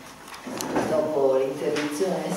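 Speech: a woman's voice talking through a microphone in a room.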